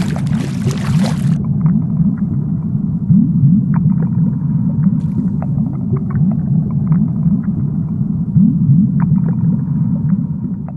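A loud, steady low rumble laid over the animation as a sound effect, with short sliding low tones and scattered faint clicks in it. A burst of hiss comes in the first second or so.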